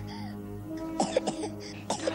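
A little girl coughing a few times, about a second in and again near the end, over a soft, sustained music score; she is struggling for breath.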